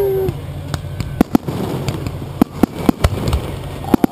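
Aerial firework shells being fired and bursting close by: a string of sharp, irregular bangs, about ten over four seconds, with a steady low rumble beneath.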